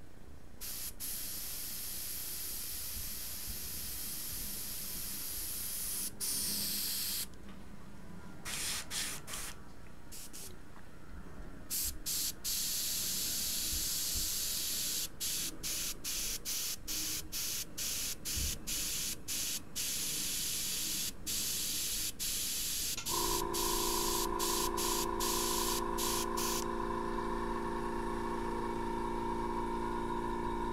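Airbrush spraying paint with a hiss of air that starts and stops as the trigger is worked: long passes at first, then many short, quick bursts. About three-quarters of the way through, a steady hum with several pitches joins in under the hiss and lasts to the end.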